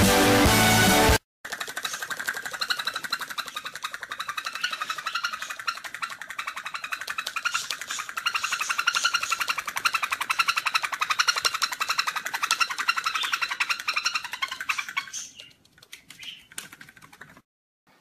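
Loud music with a beat for about a second, cut off sharply. Then a feathered toy bird walking across a floor, making dense rapid clicking with a wavering high tone for about thirteen seconds before it fades out.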